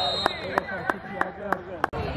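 A referee's whistle holding one high note that stops just after the start, then about seven sharp, irregularly spaced impacts over faint crowd chatter on the sideline.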